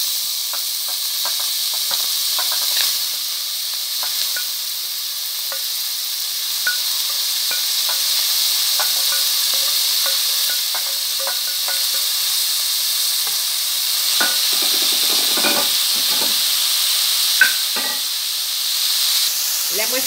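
Chopped onions, tomatoes and bell peppers sizzling in hot oil in an aluminium pot: a steady high hiss with scattered light clicks, and a short run of scraping a little after halfway.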